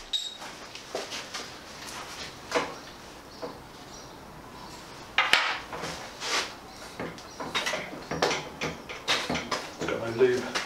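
Irregular clinks and knocks of coil-over rear shock absorbers being handled and offered up to the mounts of a bare steel motorcycle frame. The sharpest knock comes about five seconds in.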